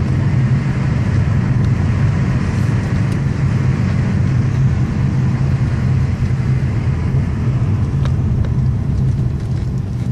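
Car driving along the road, heard from inside the cabin: a steady low rumble of engine and tyres.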